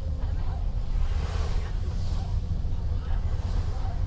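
Steady low rumble of a bus running on a wet road, heard from inside the cabin, with a hiss of tyres on water.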